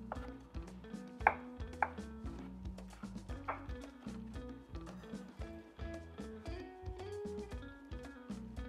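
Chef's knife chopping roasted red peppers on a wooden chopping board: a run of irregular knife strikes on the board, a few louder than the rest in the first half.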